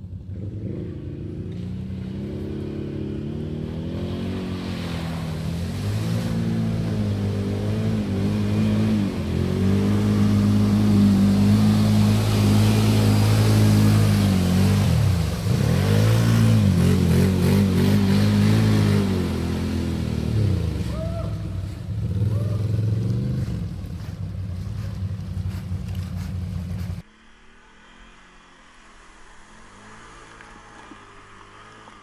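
Can-Am Renegade ATV engine revving hard as the quad ploughs through a deep mud puddle, its pitch rising and falling with the throttle, with mud and water splashing. It grows louder toward the middle as the quad passes close, then cuts off suddenly near the end to a fainter engine sound.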